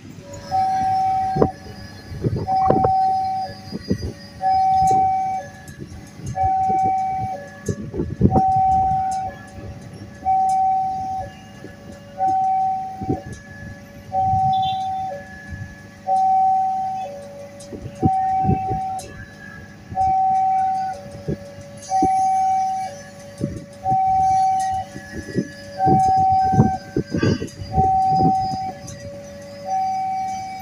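Railway level-crossing warning alarm sounding a two-tone signal, a higher tone then a lower one, repeating about every two seconds, warning that a train is approaching. Short knocks are heard now and then beneath it.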